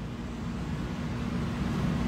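A low, steady rumble of background noise, growing slightly louder.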